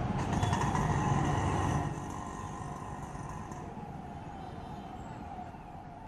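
Street traffic noise from passing vehicles, louder for about the first two seconds and then settling to a lower, steady hum.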